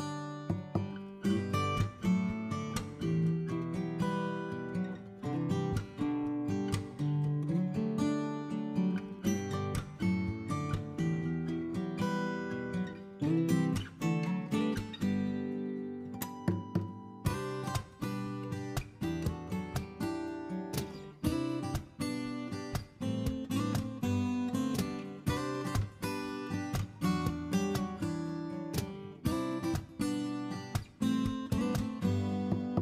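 Background music of acoustic guitar, strummed and picked in a steady run of notes.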